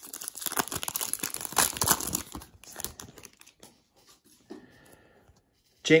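Wrapper of a Panini Mosaic football card pack being torn open and crinkled by hand. There is a dense run of crackling for about the first three seconds, which then thins to a few faint rustles.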